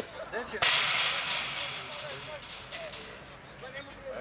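A sharp click, then a sudden loud rush of noise about half a second in that fades away over the next second or two, with men's voices faint in the background.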